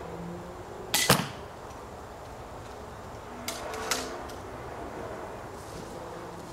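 An 80 lb pistol crossbow shooting a bolt: a sharp snap of the string, then a moment later the bolt smacking into the foam block target, about a second in. Two fainter clicks follow about two and a half seconds later.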